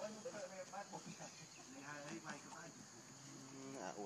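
Background voices of people talking, with a long, low held tone near the end.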